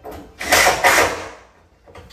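A wooden cabinet panel scraping as it is pushed into a tight wall-to-wall fit: two loud rubbing scrapes in quick succession in the first second, then it settles.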